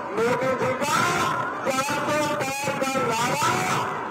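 A man's voice amplified through a handheld microphone, speaking or calling out to a crowd, with background noise beneath it.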